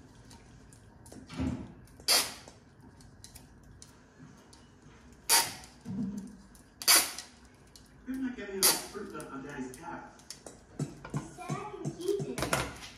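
Handling of glassware and small decorations on a kitchen counter: four or five sharp clicks and clinks a second or two apart, with a low murmuring voice in between.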